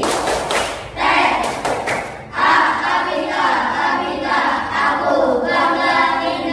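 A class of children and their teacher clapping in two loud bursts with voices, then singing a song together from about two and a half seconds in.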